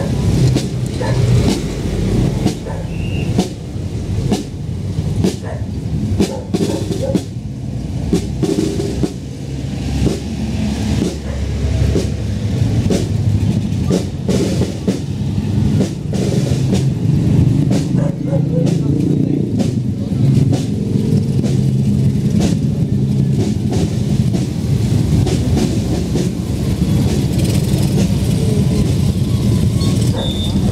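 Marching band with brass horns, saxophones and drums playing as it passes in the first half, followed by a motorcycle tricycle's engine running at walking pace, with crowd voices throughout.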